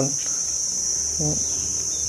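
Insects trilling outdoors, a steady high-pitched drone that does not change, with a brief vocal sound about a second in.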